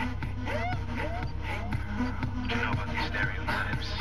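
A rap track with a steady beat plays from a car stereo, a Pioneer Premier DEH-P690UB head unit feeding a Clarion equaliser. It plays through the car's speakers with no subwoofer or amplifier fitted yet.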